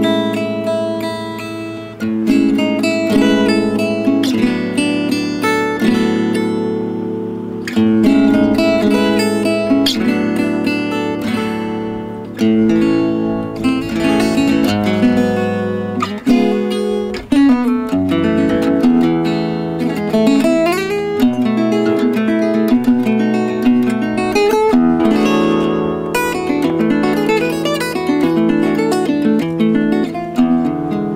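Solo gypsy jazz playing on a Selmer-style acoustic guitar with a small oval soundhole, picked with a plectrum: quick single-note runs mixed with strummed chords.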